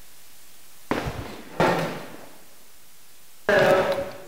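A voice through a microphone in short loud bursts, each starting abruptly: about a second in, again a little later, and once more near the end.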